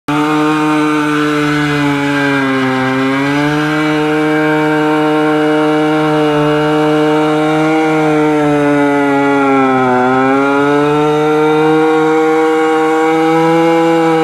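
Modenas Dinamik underbone motorcycle's small single-cylinder engine held at high revs during a stationary burnout, its rear tyre spinning against the asphalt. The pitch sags twice, about 3 seconds in and about 10 seconds in, as the revs drop under the load, then climbs back up.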